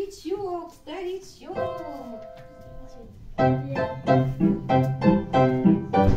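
Children calling "Ау!" in long, drawn-out voices, then music comes in: a held chord about one and a half seconds in, and from about three and a half seconds a loud, rhythmic piano tune.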